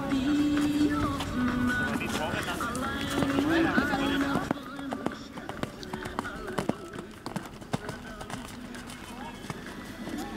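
Music with held notes and voices for about the first half, then quieter, with the hoofbeats of a show-jumping horse cantering on an arena's sand footing.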